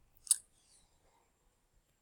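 A single short click of a computer mouse button about a third of a second in, otherwise near silence.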